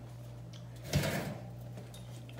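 A steady low hum, with one brief soft thump and rustle about a second in.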